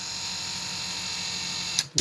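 Restored 1975–76 Cadillac Eldorado power seat mechanism running on the bench, its rebuilt electric motor and transmission driving the seat track forward: a steady high whine that stops with a click near the end.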